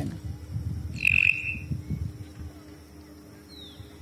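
A bird gives a short clear whistled note about a second in and a brief falling whistle near the end, over a low, uneven rumble of wind on the microphone.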